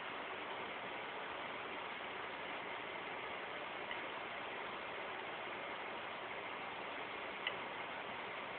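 Steady hiss of recording noise with no other sound, broken only by a faint tick about four seconds in and another near the end.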